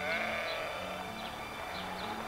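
A farm animal calling, a bleat or low, heard faintly over a low steady hum in the ranch footage's soundtrack.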